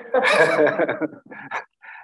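Several people laughing together, a burst of about a second that falls away into a few short chuckles.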